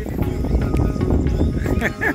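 Wind rumbling on the microphone, with indistinct chatter from people aboard a small open boat.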